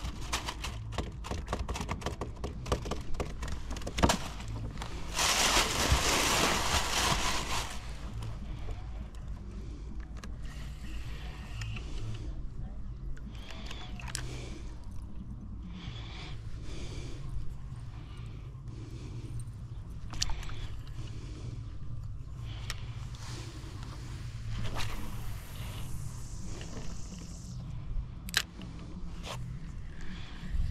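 Sounds of a fishing kayak on the water: a steady low hum with scattered small clicks and knocks of gear, and a loud rush of noise about five seconds in that lasts a couple of seconds.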